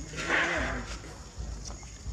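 A monkey gives one short harsh cry, about half a second long, starting about a quarter of a second in; it comes from a group of macaques roughly handling an infant pinned on the ground.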